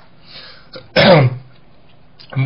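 A man clears his throat once, about a second in: a short, loud burst that drops in pitch.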